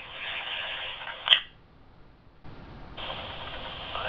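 Two-way radio loudspeaker of a Kenwood TK-3701D PMR446 walkie-talkie playing the hiss of a received transmission. The hiss ends in a short burst as the transmission drops about a second in, then goes quiet. A new transmission opens with steady hiss again for the last second or so.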